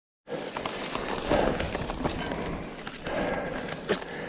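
Mountain bike tyres rolling over dry leaves and dirt on a climbing forest singletrack, with scattered clicks and crackles of leaves and twigs under the wheels. The rider breathes hard on the climb, with two louder breaths.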